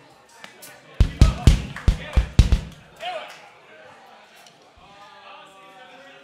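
Drum kit: a quick run of about six heavy kick-drum and tom hits about a second in, then soft guitar notes start near the end as the band begins the tune.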